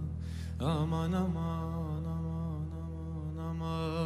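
Male singer's wordless Arabic tarab vocal: a breath about half a second in, then the voice slides up and holds a long, wavering, ornamented line over a steady low instrumental drone.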